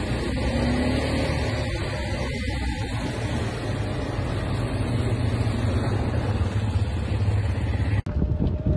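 Quad bike (ATV) engine running steadily on the move, under a dense, continuous rumble of ride and wind noise on the phone's microphone.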